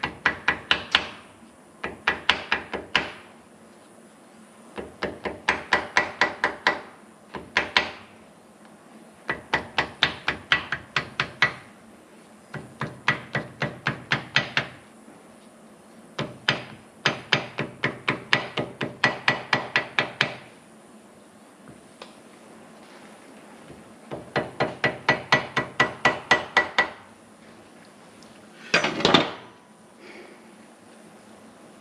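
Ball-peen hammer tapping gasket paper against the edge of a tractor thermostat housing held in a vise, cutting out a new gasket. The taps come several a second in runs of one to three seconds, with short pauses between.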